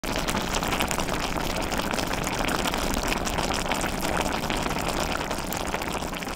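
Hot pot of motsunabe in white miso broth simmering, a dense, steady crackle of many small bubbles.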